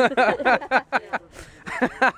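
People laughing in quick short bursts, with a brief lull and another short laugh near the end.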